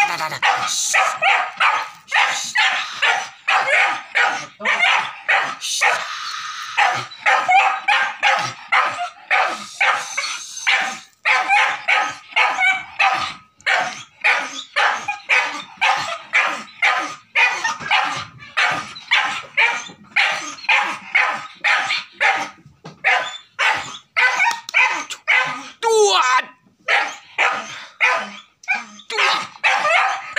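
Boar-hunting dog barking rapidly and without pause, about two to three barks a second, with a short whining slide in pitch about four seconds before the end.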